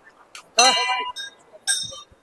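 Hindu temple bells struck twice, about half a second in and again near the end, each giving a bright metallic ring that dies away within about half a second.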